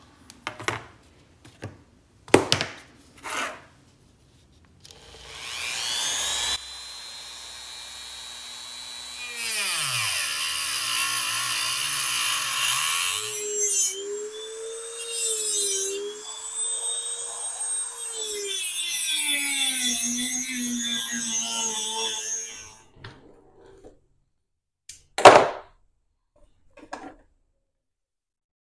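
Dremel rotary tool with a cut-off wheel spinning up and cutting a copper bus-bar strip held in a vise. Its high whine sags and wavers as the wheel bites into the copper, then stops. A sharp knock comes near the end.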